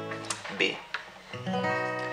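Acoustic guitar: a strummed A major chord rings out and fades, then a B major barre chord at the second fret is strummed about one and a half seconds in and rings on.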